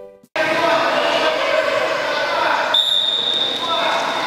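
A large indoor badminton hall full of children: many voices talking at once over footsteps and knocks on the court floor, with the hall's echo. A high steady tone comes in about three seconds in.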